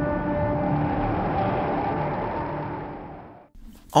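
A rumbling drone with several held tones, used as a transition sting. It is steady, then fades out about three and a half seconds in.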